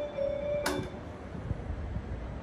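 Station platform departure melody (hassha melody) playing its last notes and stopping about half a second in with a sharp click, followed by low steady platform hum with a soft thump.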